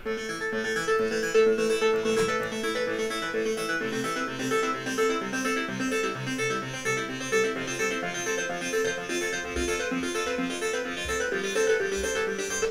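Fifty stacked instances of the Serum software synthesizer playing a plucked, keyboard-like sequence of short notes on a 2016 MacBook Pro, with a little crackle in the audio: the sign that the computer's CPU cannot quite keep up with that many synth instances.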